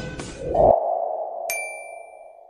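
Background music cuts off short, leaving a sustained mid-pitched tone. Then a single bright, bell-like ding sound effect strikes and rings out, fading.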